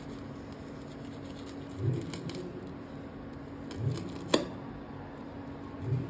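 Knife and fingers working crisp, deep-fried bread rolls on a plate: faint crackling of the fried crust, with one sharp click a little over four seconds in, over a steady low hum.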